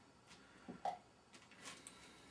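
A few faint, short clicks and scrapes of a small utensil working beans out of a tin can onto a dehydrator tray.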